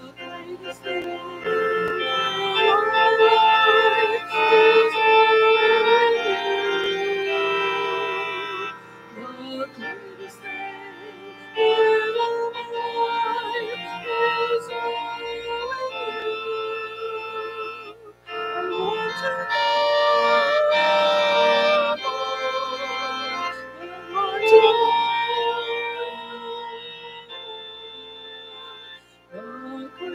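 Organ playing a slow hymn tune in sustained chords, phrase by phrase, with short dips between phrases.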